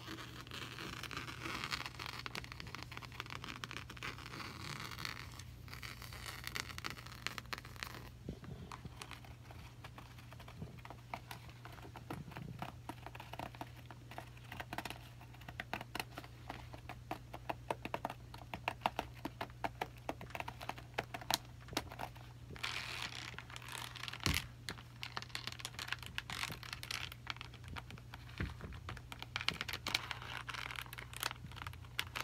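Long fingernails scratching and tapping on a perforated Michael Kors bag, making dense runs of small sharp clicks. Soft rustling and rubbing comes in the first few seconds and again a little after the middle.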